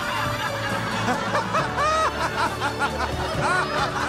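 Short bursts of chuckling and snickering laughter, several overlapping at different pitches, over light background music with steady low notes.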